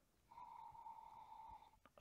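Near silence, with a faint steady high tone lasting about a second and a half and a small click near the end.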